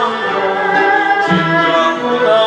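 A man singing a song into a microphone in held, wavering notes, accompanied by a small ensemble of Chinese traditional instruments, with a hammered yangqin among them.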